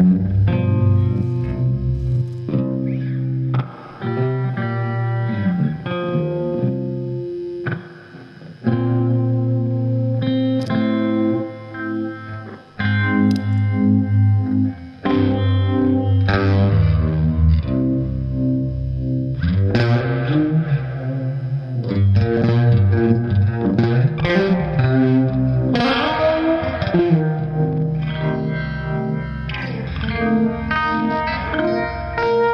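Electric guitar tuned down to C standard, played as a slow blues jam through a uni-vibe pedal and overdrive into a tube amp, with low sustained notes under lead lines and bent notes in the second half.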